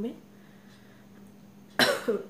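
A woman coughs once, sharply, near the end after a quiet pause; the cough comes from a cold she has.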